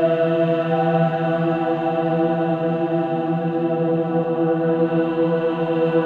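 Slow meditation music of sustained, droning chant-like tones held steady without rhythm, with a higher tone joining about a second in.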